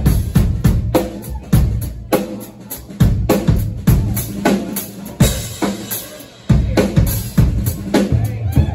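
Live band music from a three-piece: drum kit with kick and snare hits up front, over electric bass and electric guitar.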